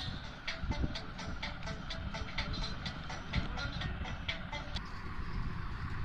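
Light, sharp metallic clicks at about four a second from a hand-operated tabletop ring stretcher as its die and bolt are fitted back and turned, over a low steady rumble.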